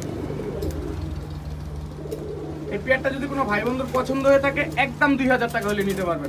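Domestic pigeons cooing in their cages, softly at first and louder from about halfway through.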